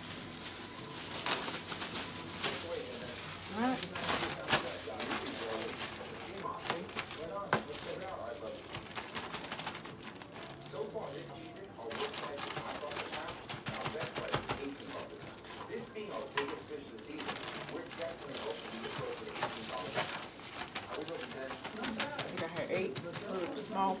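Battered chicken frying in the hot oil of a Farberware electric deep fryer: a steady crackling sizzle, with the rustle of a plastic bag as more pieces are coated.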